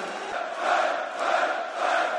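Large arena crowd chanting together, the sound swelling and easing in a steady rhythm about three times a second.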